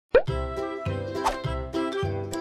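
A quick pop sound effect at the very start, then background music with a regular bass beat.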